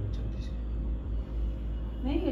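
Steady low background rumble, with a couple of faint clicks near the start.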